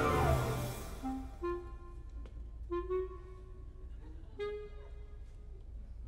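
Live orchestral film score: a loud full-orchestra chord dies away in the first second, then a few short, quiet woodwind notes sound one at a time, spaced a second or more apart.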